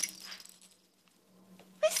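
A short, high-pitched laugh near the end, after a fading rustle in the first half-second.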